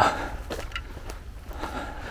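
Faint footsteps on a dirt-and-grass woodland trail, a few soft steps over a low steady rumble.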